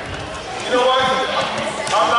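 An indistinct voice echoing in a large gymnasium, with one sharp knock just before the end.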